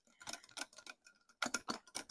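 Wire whisk clicking against a glass mixing bowl while stirring a thin batter: a run of light, irregular ticks, coming thicker and faster about a second and a half in.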